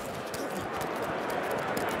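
Steady noise of a large stadium crowd during a live football play, with a few faint clicks.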